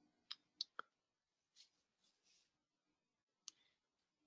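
Near silence broken by a few faint, short clicks: three in quick succession within the first second and a single one about three and a half seconds in.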